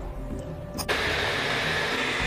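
Small electric food chopper starting suddenly about a second in and running steadily, blending Pixian chili bean paste.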